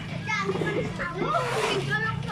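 Several voices calling out in high-pitched, sing-song shouts, over a steady low hum.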